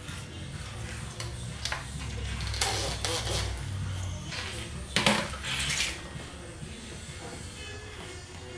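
Background music with two short hissing squirts about a second apart from a trigger spray bottle, the second starting with a click and louder: slip solution being sprayed on for a wet paint-protection-film install.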